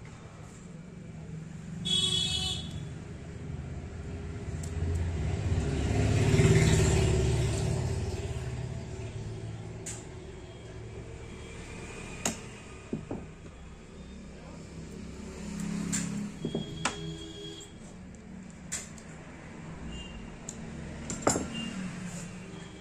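A motor vehicle passing by, its low rumble swelling to a peak and fading over several seconds, with a short beep about two seconds in. Scattered light clicks and taps of small metal and plastic projector parts and a screwdriver being handled.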